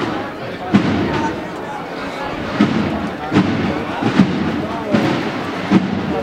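Crowd murmur with a drum beating a slow, steady marching cadence, one stroke about every 0.8 s.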